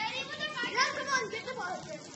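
Children's high-pitched excited shouts and squeals during play, several calls in the first part, dying away near the end.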